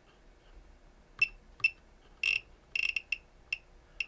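Riden RD6018 bench power supply's buzzer giving about seven short, high beeps, irregularly spaced and some in quick succession, as its rotary encoder knob is turned to set the output voltage.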